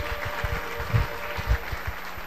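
Congregation applauding steadily, with a few dull low thumps near the microphone.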